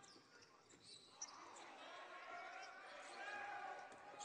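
Faint basketball court sound: after about a second of near silence, a basketball being dribbled on a hardwood floor, with faint distant voices of players and bench.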